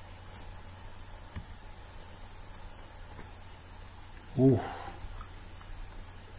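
Steady low hum and hiss of the recording's background with a faint high-pitched whine; a person says "Ooh" about four and a half seconds in.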